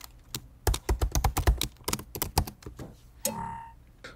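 Typing on a computer keyboard: a quick run of keystrokes as a password is entered, followed near the end by a brief tone.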